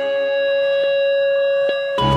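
Background music: one held chord of steady tones, with two faint ticks about a second apart.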